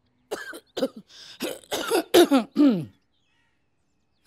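A woman coughing in a run of short coughs and clearing her throat, stopping about three seconds in.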